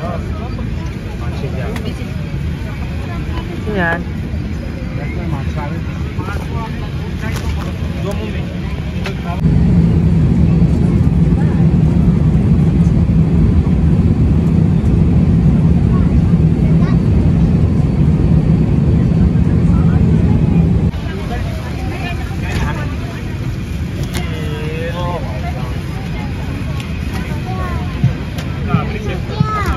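Airliner cabin noise: a steady low drone of engines and air flow. It grows louder, with a steady low hum, for about eleven seconds in the middle, then drops back.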